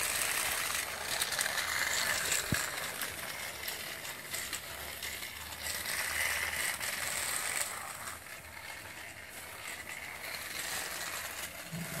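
Battery-powered TrackMaster Diesel 10 toy engine running along its plastic track: a small electric motor and gears whirring and rattling, somewhat quieter in the last few seconds.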